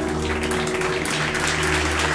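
Audience applauding steadily, with background music underneath.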